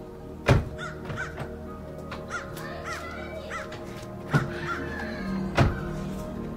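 Background music, with a crow cawing several times in short calls over it and three sharp knocks, about half a second in, past the middle and near the end.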